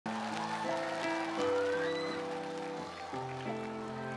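Instrumental intro of a slow pop ballad played live over a sound system: held chords step to new harmonies every second or so, with a short rising glide about a second and a half in.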